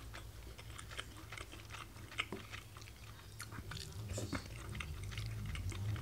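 A person chewing a mouthful of curry rice, faint, with many small wet mouth clicks, over a steady low hum.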